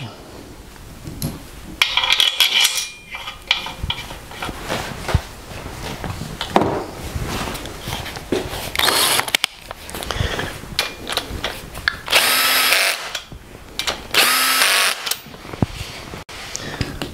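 Power driver spinning down the two main bearing cap bolts on a small-block Chevy block in several short runs. The two longest runs, about a second each, come near the end. The bolts are being run down ahead of torquing them for a Plastigage bearing-clearance check.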